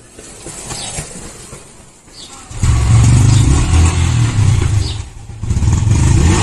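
Yamaha MT-15's single-cylinder engine catching on a push start: a couple of seconds of the bike being rolled, then the engine fires about halfway through and runs loudly, dipping briefly near the end before picking up again. The battery is flat from months of standing, so the electric starter could not turn it over.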